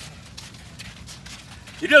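Footsteps of several people walking on packed beach sand, a soft crunching step several times a second, faint under the open air. A man's voice starts speaking near the end.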